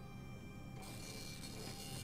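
Quiet film soundtrack: soft background music of held steady tones, with a high hiss coming in about a second in.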